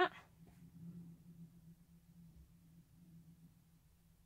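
Quiet room tone with a faint steady low hum, just after a spoken word ends at the very start; threading the needle makes no sound that stands out.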